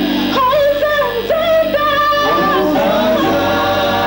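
Live gospel music: a group of singers on microphones singing a melody with vibrato and long held notes over a band backing.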